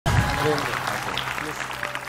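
Studio audience applauding and cheering, with a few voices in it, dying away over the two seconds.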